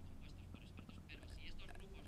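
Faint murmured voice, barely audible, over a steady low hum.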